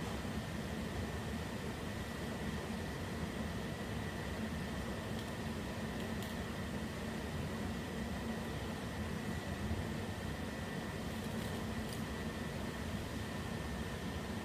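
Steady air-conditioning noise: a low hum and even hiss with a thin, faint high whine, broken by a few faint clicks.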